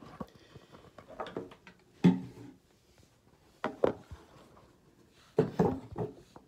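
Handling noise from a phone being moved about and bumped: a few short knocks and clunks, the loudest about two seconds in, with faint rustling between.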